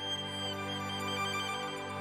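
Solo violin playing slow, sustained notes with vibrato over a soft, steady low accompaniment.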